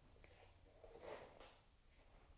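Near silence: room tone, with a faint brief noise about a second in.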